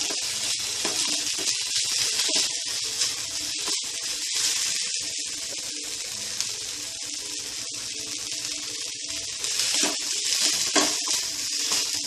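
Onions, green chillies and curry leaves sautéing in coconut oil in a steel kadai, giving a steady sizzle. A metal spatula stirring the pan gives scattered clicks and scrapes against the steel.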